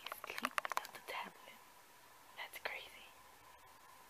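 A woman whispering, with a quick run of sharp clicks in the first second.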